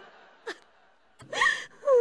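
A person's voice in short gasping breaths and cries, separated by quiet gaps, with a rising cry about a second and a half in and a falling one near the end.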